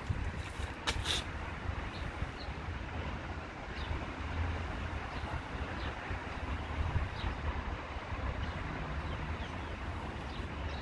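Wind rumbling and buffeting on the microphone, in gusts, over a steady outdoor background hiss, with a few faint short ticks.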